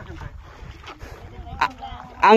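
Wind buffeting the microphone in a low steady rumble, with faint distant voices and a brief sharp click near the end.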